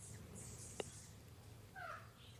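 Very quiet room tone with a steady low hum, a faint click just before a second in, and near the end a brief, faint pitched cry that bends in pitch.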